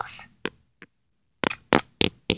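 Handling noise from a plastic toy horse and hands close to a phone's microphone: a breathy 'ah', a couple of small clicks, then a quick run of sharp taps and knocks about one and a half seconds in.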